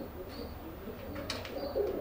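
Birds calling: a low, repeated cooing under a few short, high chirps.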